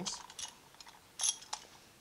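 A few faint clicks and one sharper metallic clink a little past the middle, from metal pump parts and tools being handled.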